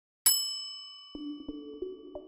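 A single bright, bell-like ding that rings out and fades over about a second, then a light background melody of separate notes beginning about a second in.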